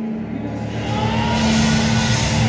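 Live band playing loud, distorted electric-guitar music, with a low sustained guitar drone; about half a second in, a noisy wash of drums and cymbals comes in and builds.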